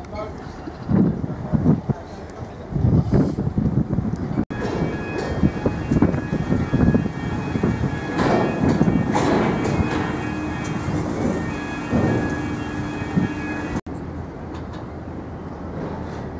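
Gusty wind buffeting the microphone on an open ship's deck, over a low steady rumble. From about a third of the way in, faint steady tones of ship machinery run under it, with a low hum joining later. The sound drops out briefly twice, where the recording is cut.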